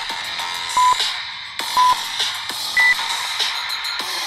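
Interval-timer countdown beeps over electronic background music: two short, equal beeps a second apart, then a higher-pitched beep a second later that marks the end of the work interval.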